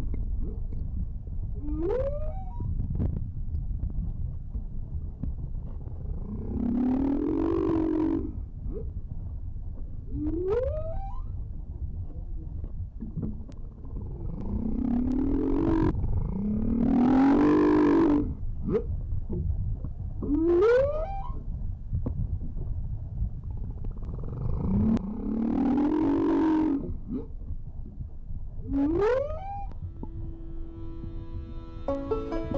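Humpback whale song: long arching moans, each followed by a short rising upsweep, repeated four times over a steady low underwater rumble.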